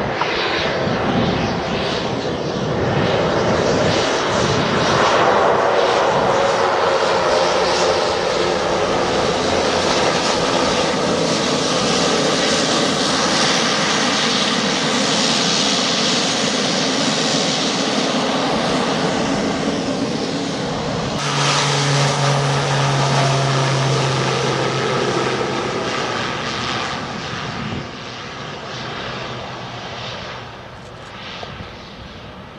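Single-engine Pilatus PC-12 turboprop running steadily as it taxis on the runway after landing. About two-thirds of the way through, the sound cuts abruptly to a takeoff, with a strong steady low drone. The sound fades near the end.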